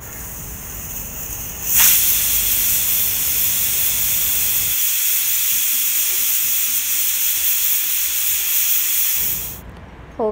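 Stovetop pressure cooker letting off steam past its weight valve, the cooker's 'whistle'. A soft hiss jumps about two seconds in to a loud, steady rush of venting steam, which lasts about eight seconds and stops abruptly near the end.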